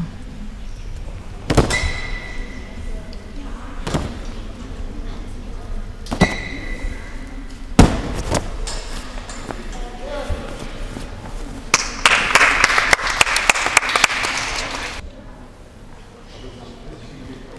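A gymnast landing on floor mats during a floor routine: about five separate thuds over the first eight seconds, the loudest near eight seconds in. Near the end come a few seconds of clapping that stops abruptly.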